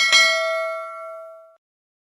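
Bell 'ding' sound effect of a subscribe-button animation's notification bell: one struck chime that rings out with several overtones, fades, and cuts off about a second and a half in.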